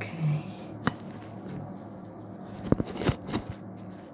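Smartphone being handled and turned by hand right at its microphone: rubbing from fingers on the phone and a few sharp taps and knocks. The knocks cluster near the end, over a steady low hum.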